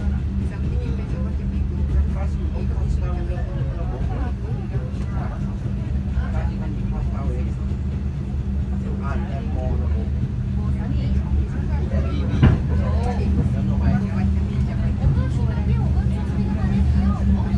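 KTMB Shuttle Tebrau train running, heard from inside the carriage: a steady low hum and rumble, with people talking over it and a single sharp knock about twelve seconds in.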